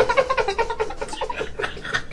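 A man's high-pitched laughter, a quick run of short squeaky notes that thins out about a second and a half in.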